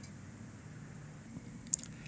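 Quiet room tone, with a brief, faint wet mouth click about three-quarters of the way through.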